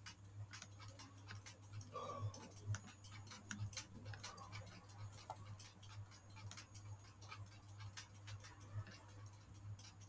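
Faint, irregular clicking of a computer mouse and keyboard while on-screen text is selected and edited, over a low steady hum.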